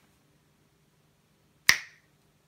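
Near silence, then a single sharp snap about one and a half seconds in.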